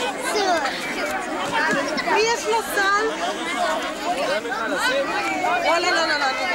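Crowd chatter: many overlapping voices, many of them high children's voices, talking and calling at once with no single speaker standing out.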